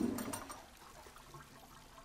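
Water from an overflowing toilet splashing and sloshing: a sudden splash at the start that dies away within about half a second.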